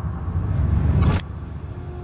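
Film sound-design swell: a low rumble builds for about a second and ends in a sharp hit, then drops to a low steady hum with a faint held tone. It marks a robot being powered back online.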